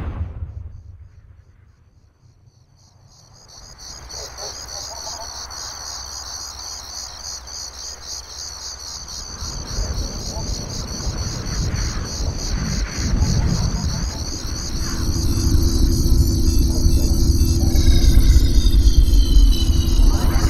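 Crickets chirping steadily in a night-time soundtrack. A low rumble swells under them, and a steady hum with falling electronic tones joins in toward the end as a flying saucer arrives.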